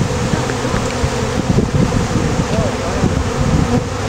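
A swarm of honey bees buzzing at close range, one dense, steady hum as the bees mill over the capture box and pour out of its newly opened entrance.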